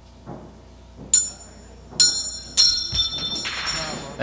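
Wrestling ring bell struck three times, about a second in and then twice more in quick succession, each strike ringing on with a high, steady tone: the bell signalling the start of the match.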